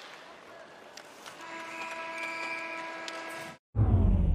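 Arena end-of-period horn sounding one steady tone for about two seconds over crowd noise, cut off suddenly. Just before the end, a loud low whoosh from a broadcast transition graphic starts.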